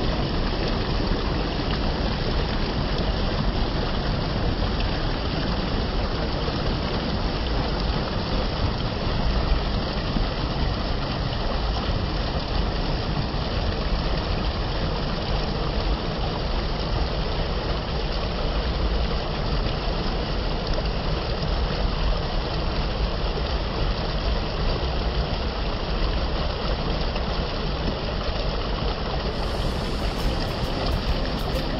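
Shallow stream rushing over rock ledges and through small rapids: a steady, even rush of water.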